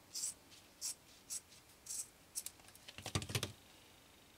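Scissors snipping through a shoe's upper: short crisp cuts about every half second, then a louder burst of clicks and knocks about three seconds in.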